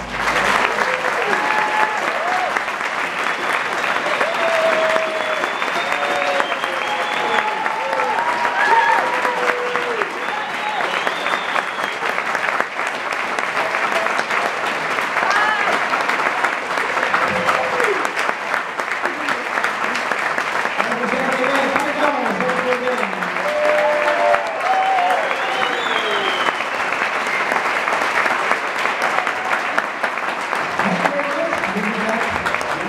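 Audience applauding steadily, with scattered cheers and voices over the clapping.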